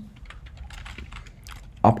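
Computer keyboard typing: a quick run of keystrokes as a line of JavaScript code is typed, with the words starting again just before the end.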